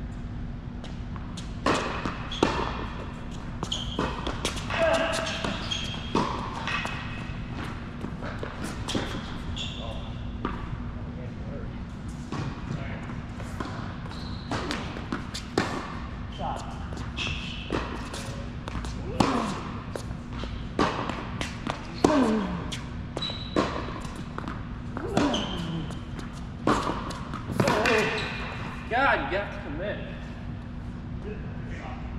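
Tennis balls struck by rackets and bouncing on an indoor hard court, a string of sharp pops that echo in the large hall, with several shoe squeaks on the court surface in the second half over a steady low hum.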